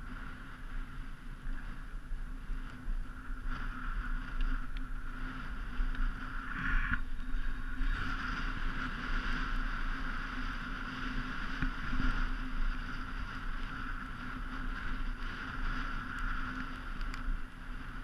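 Skis or board scraping continuously over groomed snow during a downhill run, mixed with wind noise on the camera's microphone; the loudness rises and falls with the turns.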